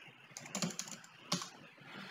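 Computer keyboard keys being typed: a handful of light keystrokes, with one sharper keystroke a little past a second in.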